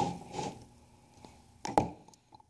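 Wooden sign board sliding and scraping across a tabletop as it is turned around, fading out within half a second. A couple of sharp knocks come about a second and a half in.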